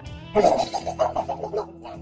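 A goat bleating: one long quavering call starting about a third of a second in, over quiet background music.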